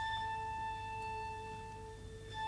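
Orchestra holding a steady high note, joined shortly after by a lower held note, the sound easing off towards the end, just after the sung line has stopped.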